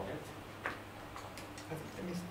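Quiet room tone with a steady low hum, faint voices off the microphone, and a few light clicks, the clearest about two-thirds of a second in.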